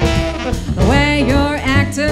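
A live swing band playing, with a pulsing bass and rhythm section under a gliding lead melody line that enters about a second in.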